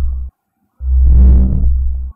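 Ghost detector phone app playing its deep, distorted rumbling ghost sound effect: one burst breaks off just after the start, and after a half-second gap a second burst of over a second follows.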